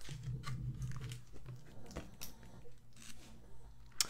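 Faint rustling and crinkling of a paper and cardboard mailer as a comic book is unwrapped, with a few soft scrapes and taps.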